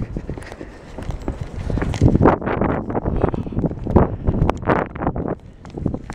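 Wind buffeting the microphone, with quick footsteps on pavement, about two or three a second, from about two seconds in until just before the end.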